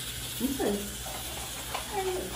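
A person's short vocal sound with a sliding pitch about half a second in, over low steady room hum.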